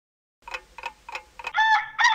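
A handful of short, irregular ticks, then about one and a half seconds in a rooster begins to crow.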